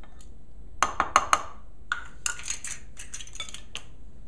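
Utensils clinking against a glass measuring cup as flour is tipped into warm yeast water and stirred in: four sharp clinks about a second in, then a run of lighter, irregular clicks.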